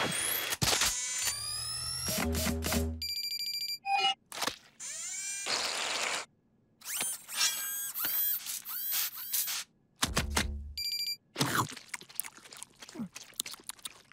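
Cartoon sound effects with music: a quick string of electronic rising whistles, a low hum, rapid pulsing beeps, swishes and mechanical whirs and clicks, broken by two short silences.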